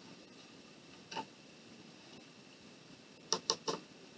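Quiet room tone with one faint tap about a second in, then three quick light clicks near the end as a small sheet of watercolor paper is handled and set down on the table.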